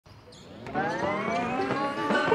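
Logo intro sound effect: a synthesized tone that swells in about 0.7 s in and slowly rises in pitch.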